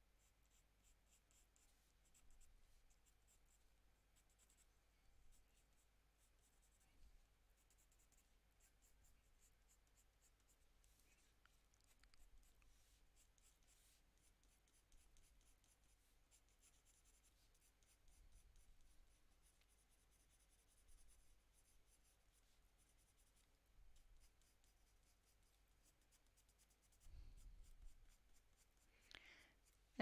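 Very faint scratching of a Prismacolor Premier coloured pencil stroking across toned paper, a soft scrape every second or two.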